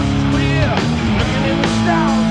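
Live hard-rock band playing at full volume: electric guitars, bass guitar and drums, with bending high guitar lines over a steady bass and drum beat.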